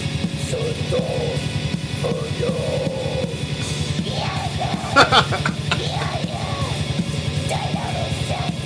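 Lo-fi amateur metal song playing, with fast steady drumming, distorted guitar and yelled vocals, the recording quality very poor. A man laughs about five seconds in, the loudest moment.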